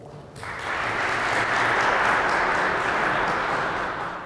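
Audience applauding in a large hall, starting about half a second in and easing off near the end.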